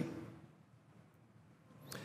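A pause in a man's speech: the last word's echo fades away in a large chamber, followed by near silence and one brief faint noise near the end.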